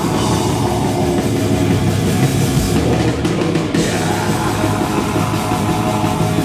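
A heavy metal band playing live: electric guitar, electric bass and a drum kit, loud and dense throughout.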